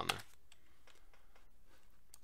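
Faint typing on a computer keyboard: a string of light, irregular clicks.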